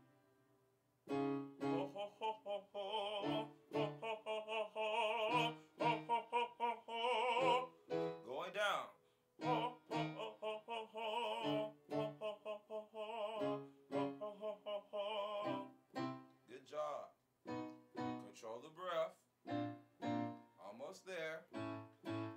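Vocal warm-up exercise: a Yamaha Motif XS8 keyboard plays piano chords and notes while a singer holds a sung vowel pattern over them with vibrato. The pattern repeats in two long phrases, each ending in a sliding glide up and down, then continues in shorter phrases.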